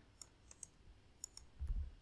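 A handful of faint, sharp clicks from a computer mouse and keyboard as a command is copied and the view switches to a terminal, with a soft low thud near the end.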